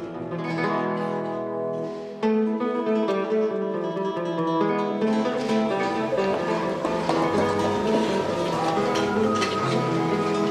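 Solo guitar music: a plucked melody on a guitar, with a new phrase starting about two seconds in. From about halfway a wash of room noise lies under it.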